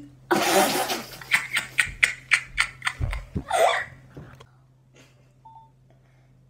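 A girl laughing: a quick run of short breathy laughs, about four or five a second, that dies away by about halfway through, with a soft low thump near the middle.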